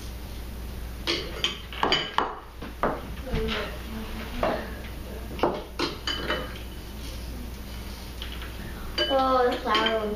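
Metal spoons clinking and scraping against ceramic bowls: a scattered series of separate clinks while filling is scooped into balloons to make stress balls. A voice is heard briefly near the end.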